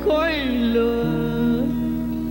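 A cải lương singing voice, gliding down through a short phrase and then holding one long note, over a sparse accompaniment with a steady instrumental note underneath from about halfway.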